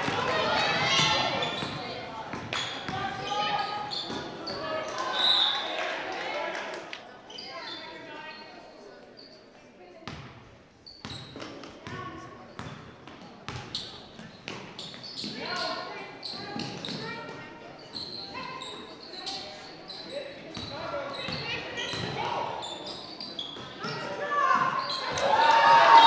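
Basketball game sounds echoing in a gymnasium: a ball bouncing on the hardwood court with a haze of players' and spectators' voices. It grows louder in the last couple of seconds.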